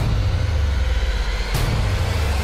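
Trailer sound-design rumble: a deep, steady low rumble with a hiss over it, and a sudden fresh surge about one and a half seconds in.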